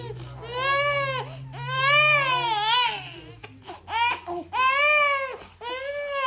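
Infant crying: a series of wails, each arching up and then down in pitch, with short catch-breath gaps between them. The longest cry comes about two seconds in.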